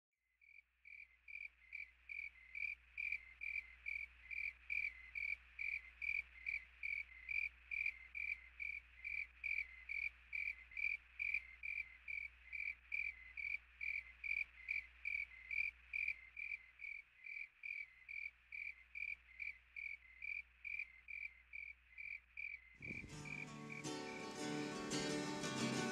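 A cricket chirping steadily, high even chirps at about two a second; acoustic guitar music comes in about a second before the end.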